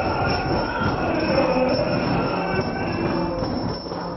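Yakshagana accompaniment music: a maddale barrel drum played under steady held tones as the dancers perform.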